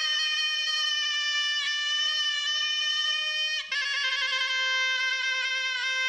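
Music: a single wind instrument plays a slow melody of long held notes, sliding briefly from one note to the next about every two seconds.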